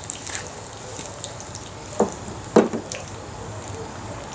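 Battered onion rings frying in a skillet of hot oil, a steady sizzle with scattered small crackles. Two sharp knocks come about two and two and a half seconds in.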